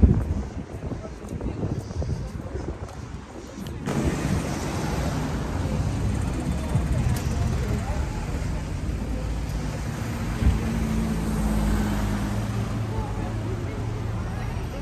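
City street traffic: cars driving past with steady road noise and an engine hum. The noise jumps abruptly louder about four seconds in.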